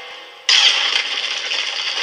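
A loud, steady rushing noise from the animated episode's soundtrack, starting suddenly about half a second in, with faint music under it.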